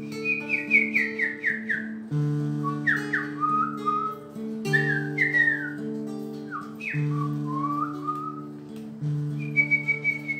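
A man whistling a melody of quick, stepwise falling notes, in short phrases, over a fingerpicked nylon-string acoustic guitar with ringing bass notes and chords. Near the end the whistle holds one longer note.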